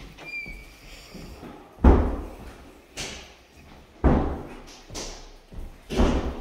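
An interior door being pushed shut, knocking against its frame in several hard thuds about a second apart; the loudest comes about two seconds in.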